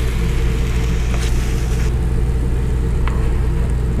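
A steady low mechanical hum, engine-like, with a couple of faint light clicks about a second in and near the three-second mark.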